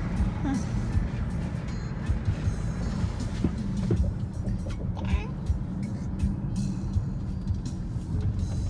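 Steady low rumble of a car driving, heard from inside the cabin.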